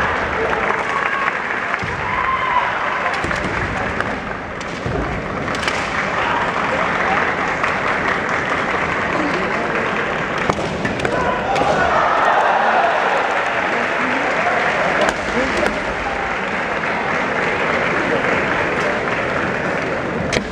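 Kendo bout in a large echoing arena: a steady din of voices and shouts from fencers and crowd, with a few sharp knocks of bamboo shinai, the loudest stretch about twelve seconds in.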